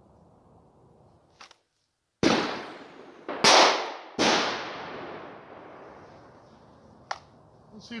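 Three 9mm pistol shots from a Ruger MAX-9 micro-compact, fired about a second apart, each followed by a fading echo. A small click comes before the first shot and another a few seconds after the last.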